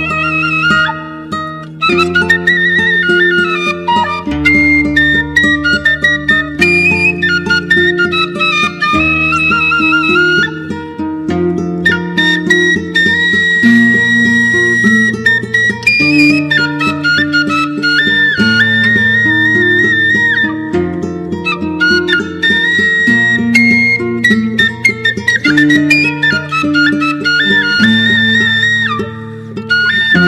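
Sundanese suling bamboo flute playing a slow melody with wavering ornaments and long held notes, over plucked kacapi zither accompaniment, in the kacapi suling instrumental style.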